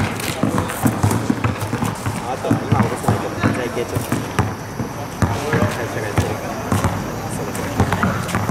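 A basketball dribbled on an outdoor asphalt court, a string of short bounces, with people's voices talking throughout.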